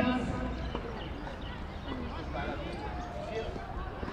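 Faint voices of several people talking at a distance, over a low steady background rumble.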